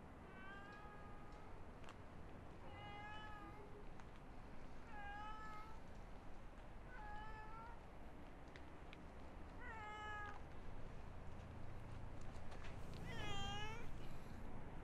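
A cat meowing six times, roughly one meow every two seconds, the last one near the end the loudest.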